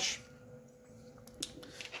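Faint handling sounds as a 3D-printed idler assembly on an aluminium extrusion is set down on a cutting mat, with a couple of light clicks about a second and a half in.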